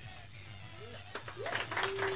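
A folk song's last note dies away. Then, from about a second in, a few people start clapping, scattered at first and growing.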